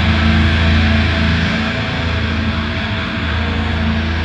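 Live deathcore band playing: heavily distorted guitars and bass hold low, sustained chords, loud and dense, with no sharp drum strikes standing out.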